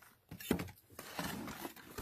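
A metal shim being worked into the edge of a fossil-bearing shale slab to pry its layers apart: a sharp knock about half a second in, then rough scraping and grinding of metal on stone.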